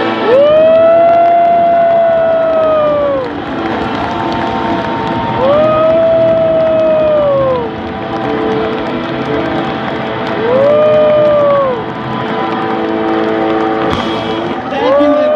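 Live rock band playing while a singer holds three long, high notes into the microphone, each sliding up at the start and falling away at the end, with the crowd cheering.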